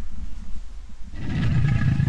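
A deep, rumbling dinosaur roar starts about a second in and carries on loudly.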